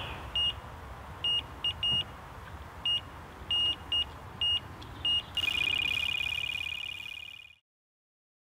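Electronic carp bite alarm sounding: single bleeps at irregular intervals, then from about five seconds in a fast unbroken run of bleeps, the sign of a fish taking line. It cuts off suddenly near the end.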